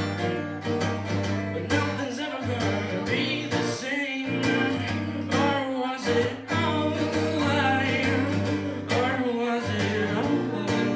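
Live acoustic guitar strummed with a male singer, played through the club's PA.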